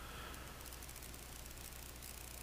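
Faint steady electrical hum and hiss: microphone room tone, with no other sound.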